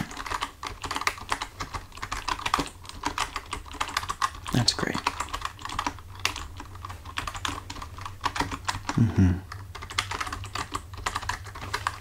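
Typing on a computer keyboard: a steady stream of quick key clicks.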